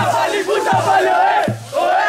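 Football supporters chanting in unison to a bass drum struck about every three-quarters of a second.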